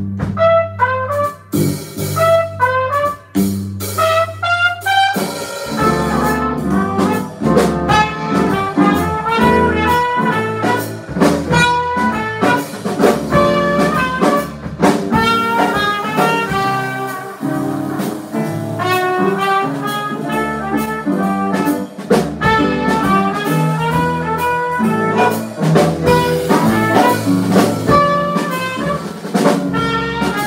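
A small jazz band playing a swing tune live: trumpet over piano, electric bass and drum kit. The opening bars are sparse, and the full band comes in about five seconds in.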